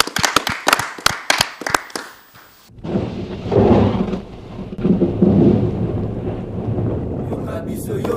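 Thunder: a fast run of sharp crackles that breaks off suddenly, then a long, loud, low rumble.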